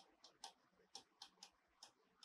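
Faint, irregular ticks of a writing tool striking a board as letters are written, about seven in two seconds.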